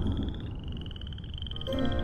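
Frog calling: one continuous, rapidly pulsed high trill, over a low rumbling background.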